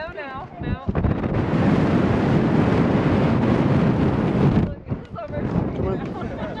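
Wind buffeting the microphone in a loud, even rush that starts about a second in and cuts off abruptly near the end.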